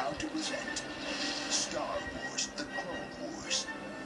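An animated action-movie trailer's soundtrack playing from a television's speakers and picked up in the room: music mixed with sudden sound-effect hits and brief voices.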